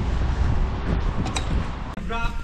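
Steady outdoor background noise with a low rumble, typical of wind on the camera microphone and distant traffic.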